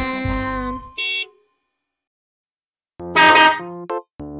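Children's song backing music ending in the first second, a brief high tone, then silence, then a loud cartoon bus horn honk about three seconds in.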